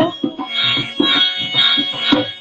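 Devotional music: an electronic keyboard holds high sustained notes over a dholak drum played by hand in a steady beat of about two strokes a second.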